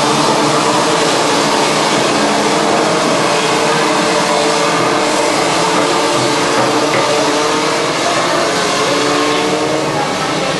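A pack of Junior Max racing karts running together, their 125 cc two-stroke engines making a loud, steady buzz of several overlapping pitches that slowly rise as the karts accelerate.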